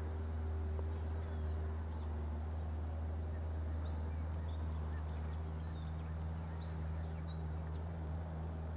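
A steady low hum runs throughout, with scattered, faint, short high chirps of small birds over it.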